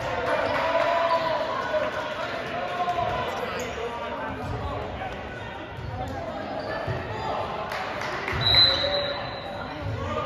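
Voices of players and spectators echoing in a large gym, with scattered low thuds of a ball bouncing on the hardwood floor. About eight seconds in there is a short, high, steady squeak or whistle.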